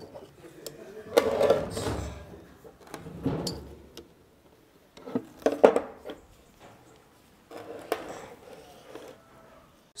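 Metal clinks, knocks and scraping of internal circlip pliers working a circlip in a bearing housing of a metal gearbox casing, in several separate bouts with short pauses, the sharpest knock about halfway through.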